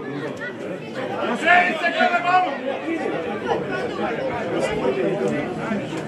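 Several men's voices talking and calling over one another, none of the words clear.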